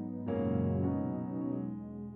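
Slow instrumental keyboard music: sustained chords, with a new chord struck about a quarter of a second in and left to ring out.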